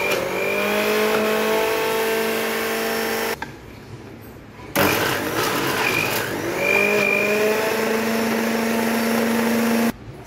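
Preethi Zodiac mixer grinder running with its juicer jar fitted, a steady motor whine that rises in pitch as it spins up. It stops for about a second and a half a little past three seconds in, starts again with the same rising whine, and cuts off just before the end.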